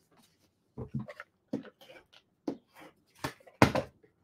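Card stock being handled on a tabletop: a folded white card base opened flat and a paper panel slid over it, heard as several short rustles and taps, the loudest near the end.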